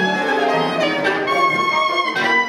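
Free-improvised duet of tenor saxophone and grand piano: the piano plays busy notes in the lower register while the saxophone holds a long, steady high note through the second half.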